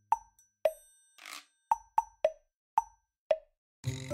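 Seven short, pitched plops, hopping between a higher and a lower note at an uneven rhythm, with a soft hiss about a second in: a sparse plucky break in looping background music.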